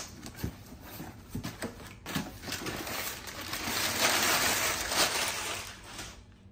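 A cardboard shipping box being opened by hand: a few light knocks and clicks on the cardboard, then about three seconds of rough tearing and rustling as the packing tape comes off and the flaps are pulled open. The noise is loudest just before the end.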